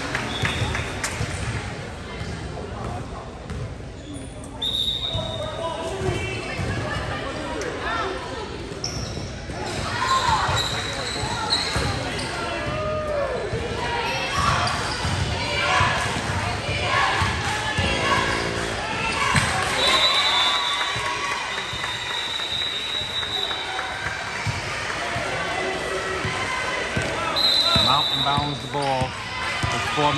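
Basketball bouncing on a gym floor during play, with players and spectators talking and calling out in the hall. Several high steady tones sound at intervals, one lasting about three seconds.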